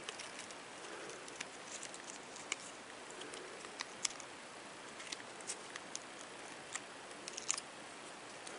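Faint handling noise of thin craft wire and flower stems being twisted together by hand: light rustling with small, irregular clicks and ticks, a few sharper ones about halfway through and near the end.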